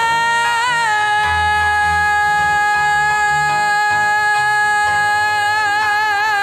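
A singer belting one long, sustained high note, held steady and then breaking into vibrato near the end, over changing piano chords: the closing held note of the song.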